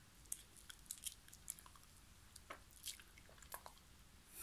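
Faint, irregular small wet clicks and smacks from a black Shiba Inu's mouth as it licks and smacks its lips after eating treats.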